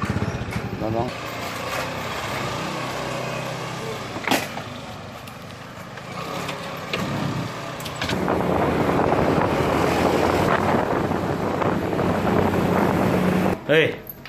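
Motorcycle engine running, with a sharp click about four seconds in; from about eight seconds in the engine and rushing noise grow louder as the bike rides along.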